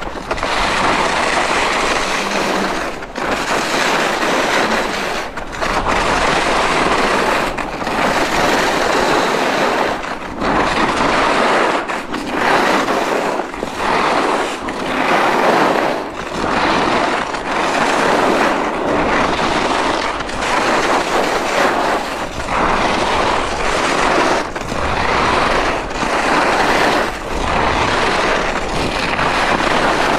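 Head WorldCup Rebels i.Speed skis carving linked turns on packed piste snow: a continuous scraping hiss of the edges on the snow, dipping briefly about every second and a half as one turn passes into the next.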